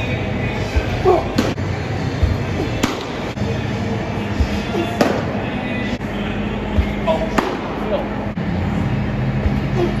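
A baseball pitch popping into a catcher's mitt near the end, among other scattered knocks over the steady hum and background voices of an indoor training facility.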